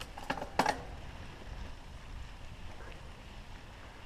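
Ride noise from a mountain bike on a dirt singletrack: a steady low wind rumble on the camera microphone over the tyres rolling on dirt, with a few sharp clicks and rattles in the first second.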